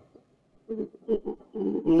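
A person's voice: short, broken vocal sounds, low and strained, beginning about two-thirds of a second in after a brief quiet moment.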